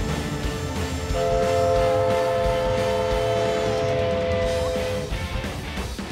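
Music with guitar plays throughout. About a second in, a multi-tone horn chord of several steady notes sounds over it and holds for about four seconds before cutting off.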